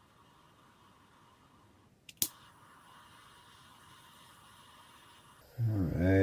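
Butane jet-torch lighter lit with a sharp click of its igniter about two seconds in, then the faint steady hiss of its flame heating a steel drill bit. A man's voice comes in near the end.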